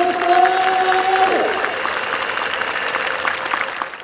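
Outdoor audience applauding steadily, many hands clapping, as an address ends. A single held pitched note sounds over the clapping and stops about a second and a half in, and the applause fades out at the very end.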